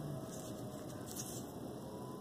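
Faint steady background hiss with no distinct event: a pause in which nothing is being handled audibly.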